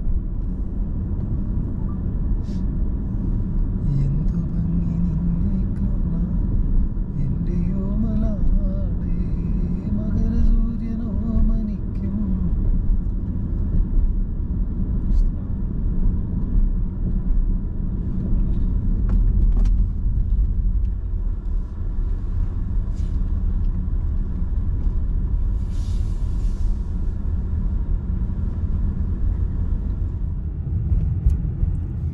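Steady low rumble of a car's engine and tyres heard from inside the cabin while driving down a steep, winding mountain road.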